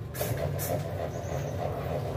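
A steady low rumble of background machinery or traffic, with two light knocks within the first second.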